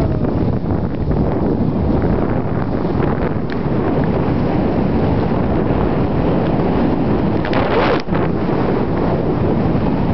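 Wind buffeting the camera microphone at riding speed, mixed with the snowboard sliding and scraping over groomed snow. A brighter, hissing scrape comes about seven and a half seconds in and cuts off sharply.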